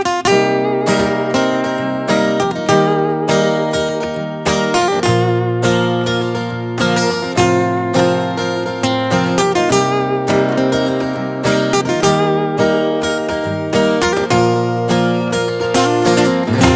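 Two acoustic guitars strumming and picking a song's instrumental intro in a sertanejo style, with a cajón keeping the beat underneath. The guitar strokes come steadily through the whole passage.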